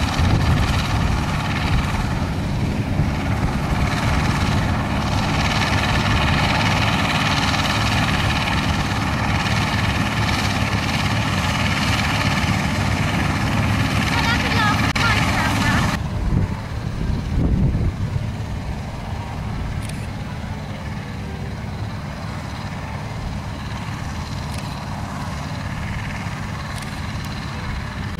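Massey Ferguson 400 combine harvester running close by, a steady mechanical drone of engine and threshing gear, mixed with a tractor engine. About 16 seconds in, the sound drops abruptly to a quieter, lower drone.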